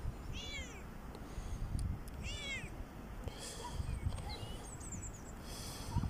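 A cat meowing twice, once about half a second in and again about two seconds in. Each meow is short and rises then falls in pitch.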